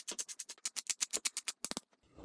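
Pepper mill grinding whole black peppercorns: a fast, even run of crisp clicks, about ten a second, that stops just before the end.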